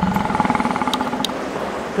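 A steady, pulsing electronic buzzing hum, the sound effect of the alien presence, which fades out in the second half, with a few faint sharp clicks.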